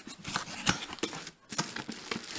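Cardboard box being opened by hand: the flaps and tab scraping and knocking with irregular sharp clicks, one stronger tap a little after half a second, a brief pause, then dense rustling of cardboard and packaging near the end.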